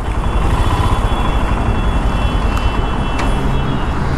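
Royal Enfield Himalayan 450's liquid-cooled single-cylinder engine idling with a steady low throb, with street traffic around it.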